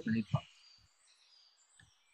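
A speaking voice for the first half-second, then a near-silent pause with faint, short, high-pitched chirps in the background.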